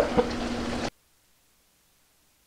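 Chicken pieces frying in oil in a cast-iron skillet, a steady sizzle and bubbling that cuts off suddenly about a second in, leaving near silence.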